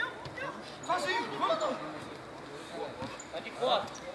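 Men's voices calling out on an outdoor football pitch, fainter than a nearby speaker, with the loudest calls about a second in.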